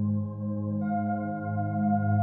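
Ambient meditation music: layered sustained drone tones that swell and pulse slowly, with a higher ringing tone coming in about a second in.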